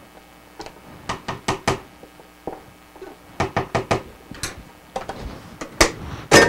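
A spoon knocking and tapping against a plastic tub and mixing bowl as canned pumpkin is scraped out into the bowl: about a dozen sharp, irregular knocks, some in quick runs of three or four.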